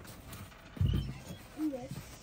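Footsteps thudding in deep snow, a cluster of low thuds about a second in, followed near the end by a short wavering voice-like sound.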